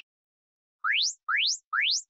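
Electronic interval-timer signal: three quick rising chirps about half a second apart, marking the switch from a rest period to a work interval.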